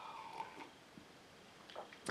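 Quiet pause in a small room: a faint, fading vocal hum in the first half second, then near silence, with a soft breath just before speech resumes.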